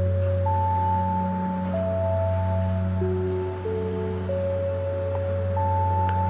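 Ambient meditation background music: a steady low drone under soft, held single tones that enter one after another at different pitches.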